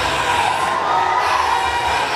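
A congregation of many voices shouting and cheering at once, a loud continuous crowd din of worship and praise.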